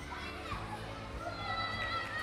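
Children's voices chattering and calling out, high and overlapping, as at play, with music fading out at the start.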